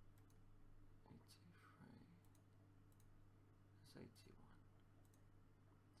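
Very faint computer mouse clicks, a handful spread unevenly through the seconds, stepping a game record back one move at a time, over a low steady electrical hum.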